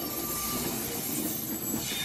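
Train running on the rails at a station: a steady rush of wheel and track noise with a thin, high-pitched squeal running through it.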